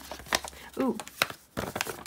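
A folded sheet of lined notepaper being unfolded by hand, crackling in several short crisp crinkles, the densest near the end; a woman's brief "ooh" about a second in.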